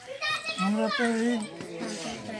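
Speech only: a person talking in Hindi into a handheld microphone.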